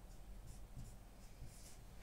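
Whiteboard marker writing on a whiteboard: a few faint, short, scratchy strokes as letters are written.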